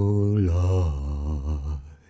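A man's low voice singing unaccompanied, holding a long 'oh' that drops in pitch about half a second in, then wavers and fades out near the end.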